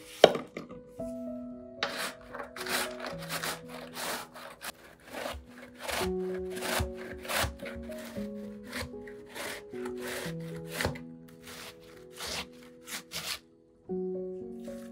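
A single knife chop through a zucchini onto a wooden cutting board just after the start, then the zucchini rasped down a stainless-steel box grater in quick repeated strokes, about two a second. Soft piano music plays underneath.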